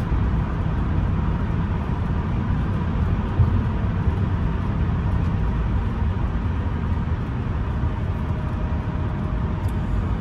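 Steady cabin noise of a 1985 Mercedes-Benz 380SE cruising at road speed: its V8 engine and tyres make a low, even noise.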